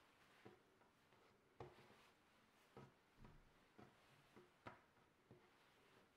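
Near silence with a scattering of faint, irregular soft taps and knocks, about eight in all: bread dough strands and hands touching a marble worktop while a three-strand braid is plaited.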